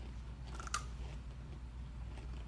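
Crunchy ridged potato chips being chewed, with one sharper crunch about three-quarters of a second in.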